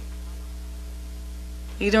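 Steady electrical mains hum with several overtones, holding at one level through the gap in dialogue.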